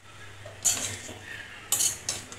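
Steel spoon scraping and clinking against a metal bowl while tossing a mix of soaked sago pearls and potato, with two louder scrapes about a second apart.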